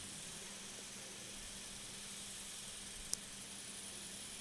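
Faint, steady hiss of the recording's background noise with a low steady hum, and one brief tick about three seconds in.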